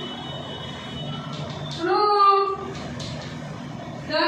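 Chalk writing on a blackboard: a high, steady squeak of the chalk for about the first second, then a few sharp chalk taps. A short voiced sound comes about two seconds in.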